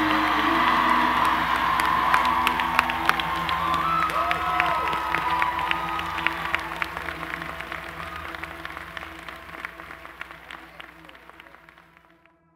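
Large outdoor crowd applauding and cheering with a few whoops, over soft background music with sustained tones; the applause fades away steadily over the second half.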